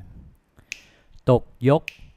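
Two crisp finger snaps about a second apart, keeping a steady time, between two short spoken rhythm syllables ('tok, yok') that mark the swing comping rhythm.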